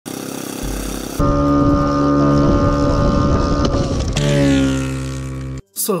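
Small piston engine of an Orlan-10 drone running at high revs on its launch catapult, a steady buzz with overtones. It gets louder about a second in, drops slightly in pitch after about four seconds, and cuts off abruptly near the end.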